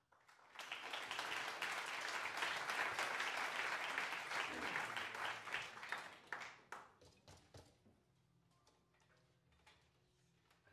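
Audience applauding: the clapping starts about half a second in, holds steady for several seconds, then thins to a few scattered claps and dies away about seven seconds in.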